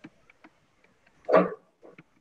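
A single short dog bark about one and a half seconds in, the loudest sound, after a few faint clicks.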